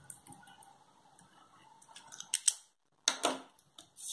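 Pen writing on paper: faint scratching at first, then a few short, louder scratchy strokes in the second half.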